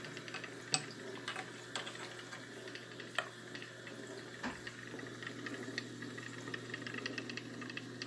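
Faint steady low hum with scattered light clicks and knocks, the sharpest about three seconds in.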